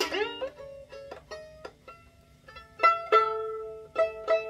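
Violin strings plucked while a new E string is brought up to pitch at the peg. The first plucked note slides upward as the string is tightened, then several more single plucks follow, some with two strings ringing together as the tuning is checked.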